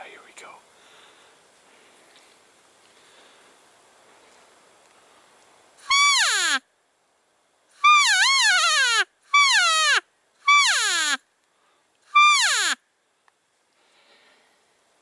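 Five loud cow-elk mews blown on a Primos hand elk call, imitating a cow elk to draw in the bull. Each is a high note that wavers and then drops steeply in pitch, the second one longest. They begin about six seconds in, after a stretch of faint background noise.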